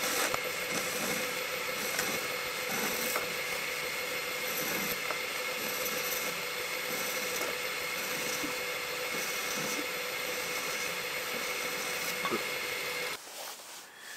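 Small metalworking lathe running with its tool cutting a small metal pin: a steady machine whine with the hiss of the cut, stopping near the end.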